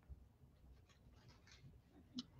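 Near silence: room tone, with a few faint light ticks.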